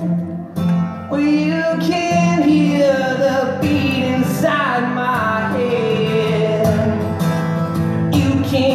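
Acoustic guitar played with a sung vocal melody, a live solo folk-rock song; the sound drops briefly about half a second in, then the voice and guitar carry on.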